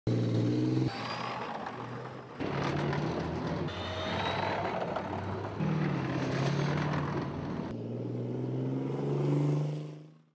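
Engines of tracked armoured vehicles running and driving past, heard as a series of short clips cut together every second or two. The sound fades out near the end.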